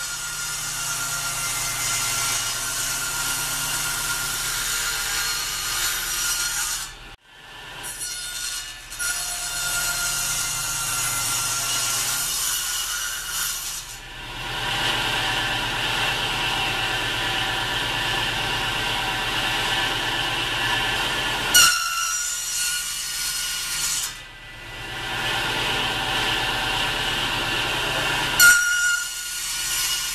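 Table saw running and cutting a tenon in wood held upright in a shop-made tenon jig, the noise broken into several stretches by short dips. There is a sharp click a little after the middle and another near the end.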